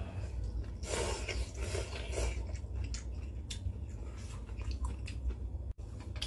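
A person slurping instant ramen noodles off chopsticks for about a second and a half, then chewing with wet smacking mouth noises and small clicks.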